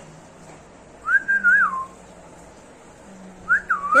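Two short melodic whistles: the first, about a second in, rises, holds, wavers and drops away; the second, near the end, is shorter and swoops up and down.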